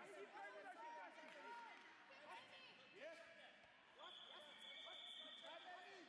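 Several voices shouting at once around a full-contact karate bout, in overlapping rising-and-falling calls, with a few thuds of strikes. From about four seconds in, a steady high tone sounds for over a second.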